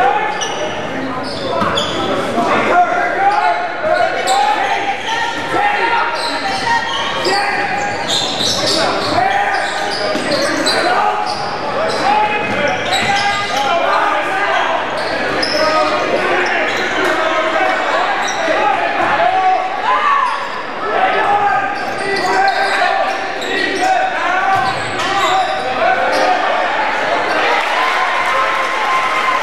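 Basketball being dribbled on a hardwood gym floor during live play, its bounces mixed with indistinct shouting and chatter from players and spectators, echoing in the gymnasium.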